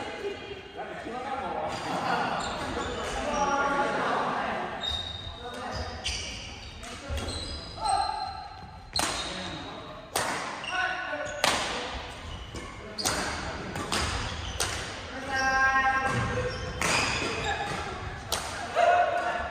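Badminton rackets striking shuttlecocks in rallies, sharp cracks coming about once a second in the second half and echoing around a large gymnasium.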